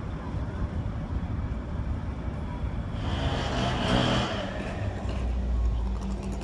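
Vehicle engine noise with a low rumble throughout, swelling to its loudest about four seconds in. It settles into a steady low engine hum near the end.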